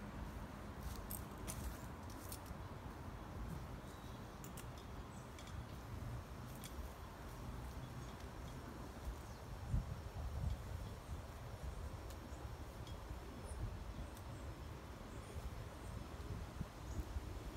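Faint outdoor background with a steady low rumble, broken by scattered light clicks and rustles: footsteps on leaf-strewn ground and the handling of a suspension trainer's straps and handles.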